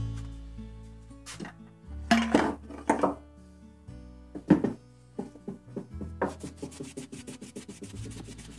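Guitar music fades out, then come a few separate knocks as an auger bit and a plastic tube are handled on a wooden workbench. From about six seconds in there is quick, even rubbing as the rusty bit is wiped on a paper towel.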